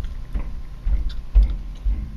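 Low rumble and soft thumps from a handheld camera being handled, about every half second, with a few faint clicks.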